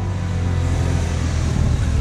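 A police motorcycle passing by on a wet road, with its hiss swelling about half a second in. A low, steady background music drone runs underneath.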